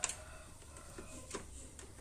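A few faint plastic clicks and handling knocks as a developer unit is gripped, unlatched and drawn out of a Kyocera laser printer's body.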